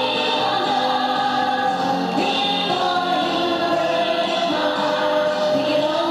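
A song with several women's voices singing together over music, steady and continuous, picked up by a home camcorder's microphone.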